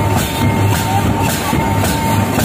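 Live Santali folk drumming: hand-held tumdak' barrel drums and a large tamak' kettle drum beating a steady, repeating dance rhythm.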